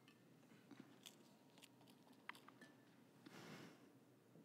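Near silence: faint room tone with a few soft scattered clicks and a brief soft noise near the end.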